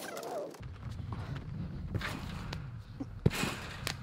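Someone bouncing on a Berg garden trampoline: dull thumps of feet on the mat, a few distinct ones in the second half with the sharpest about three seconds in, over a steady low rumble.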